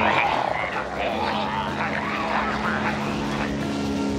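Cartoon sound effects of corn stalks uprooting and coming to life, a jumble of wavering creaks. About a second in, the steady drone of a crop-duster's propeller engine comes in beneath them.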